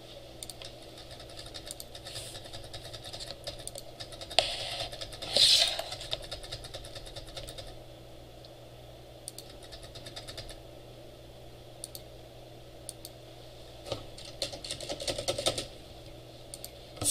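Computer keyboard being typed on in short bursts of clicky keystrokes, separated by pauses, while code braces are moved around in an editor. A short, louder noise comes about five seconds in, over a steady low room hum.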